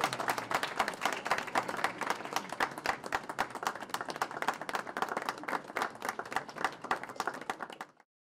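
A small group of people applauding, many hands clapping out of step, which cuts off suddenly near the end.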